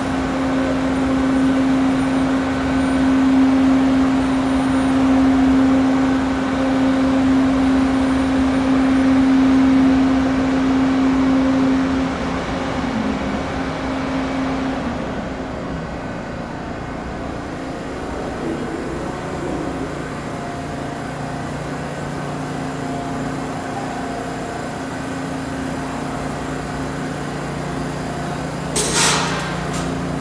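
TTC T1 subway train in an underground station, giving a steady electrical hum. The hum's pitch falls about halfway through and settles lower. A brief loud burst, such as an air hiss, comes near the end.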